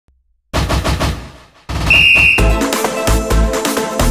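Intro music: a rapid rattle of hits that fades, then a short high whistle note, then electronic music with a steady beat starting about halfway through.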